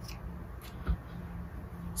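Faint snip of scissors cutting off the end of the cord inside fabric piping, followed by a soft thump about a second in.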